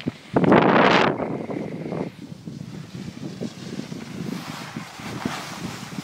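Wind rushing over the microphone of a handheld camera during a ski descent, loudest in a burst about half a second in that lasts under a second, then settling into a steadier, lower rush.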